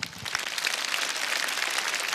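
Studio audience applauding. The applause breaks out suddenly and grows steadily louder, in response to a judge's top score and "bravo".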